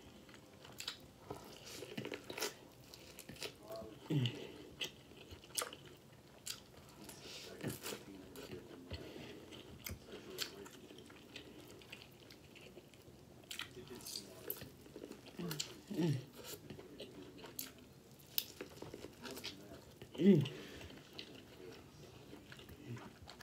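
A person chewing and biting boiled corn on the cob: many small mouth clicks and smacks. A few short falling "mm" hums of enjoyment come in between, the loudest near the end.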